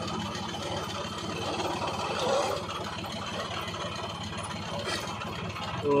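Tractor engine running steadily at a low, even speed, powering a borewell pipe-lifting machine.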